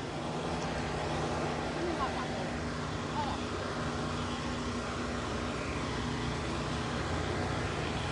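Steady low hum of a motor vehicle engine idling, with faint distant voices.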